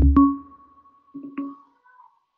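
A low thud, then an electronic chime of steady ringing tones that is struck again about a second and a half in and fades: a chat-message notification alert from an online meeting app.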